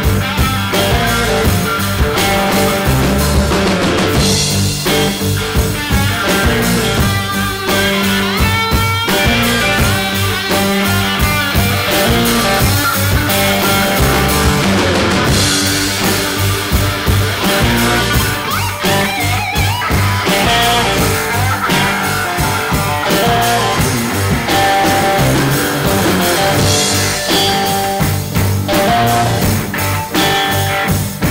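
Live blues-rock band playing an instrumental passage: a lead electric guitar over drums and a second electric guitar.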